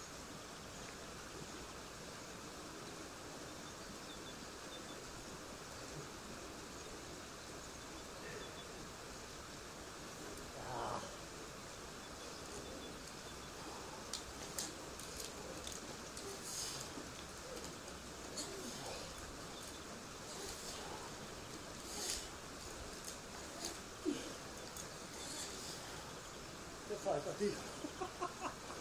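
Steady outdoor background noise with faint voices, and scattered light clicks and rustles in the second half.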